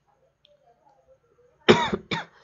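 A person coughs once, a short loud cough near the end after a quiet pause.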